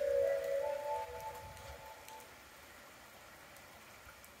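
Station platform loudspeaker chime: a short melody of a few sustained notes that fades out about two seconds in. It heralds the automated announcement of an approaching train.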